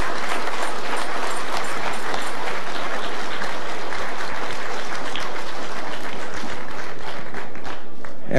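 Audience applauding: a steady mass of clapping that stops near the end.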